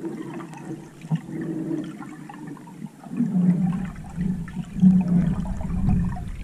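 Underwater noise of water rushing and sloshing around a camera on a freediver finning up toward the surface, with a low hum that grows louder about halfway through.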